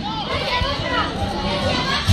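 A crowd of children chattering and calling out at once, with many overlapping voices.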